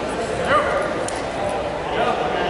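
Indistinct voices murmuring in a large, echoing gymnasium, with one short high-pitched chirp about half a second in.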